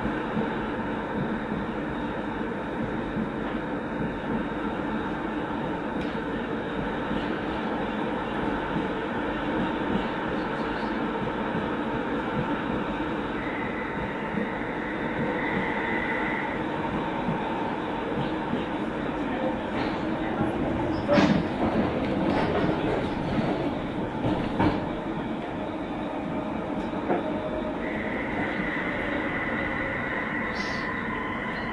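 Tram running along street track, heard from inside the driver's cab: a steady rumble of steel wheels on rail with a motor hum. A high, steady whine comes in twice, once about halfway through and again near the end. A few sharp knocks and rattles sound about two-thirds of the way in.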